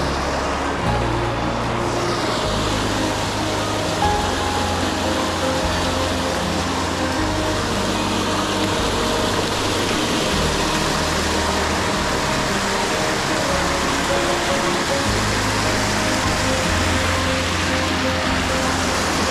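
Background music with a bass line of low notes changing every second or two, over the steady rush of a small waterfall cascading over rock ledges into a pool.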